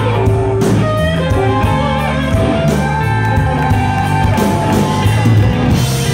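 Live blues-rock band playing: electric guitars over bass and drums, loud and continuous.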